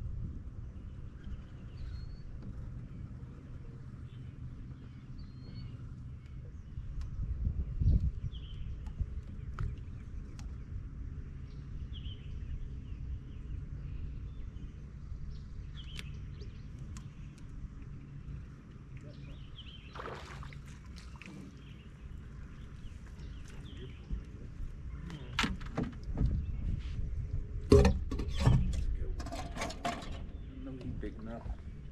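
Small electric boat motor humming steadily, most likely the bow trolling motor moving the bass boat slowly while it trolls, with faint bird chirps every few seconds. In the last few seconds a burst of knocks and thumps on the boat.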